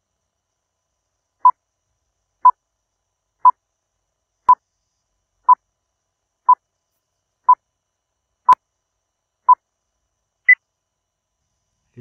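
Electronic countdown timer beeping: nine short, identical beeps, one each second, then a single higher beep that marks the end of the countdown.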